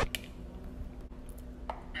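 A couple of faint clicks of a metal fork against a ceramic bowl over low room hum, one just after the start and one near the end.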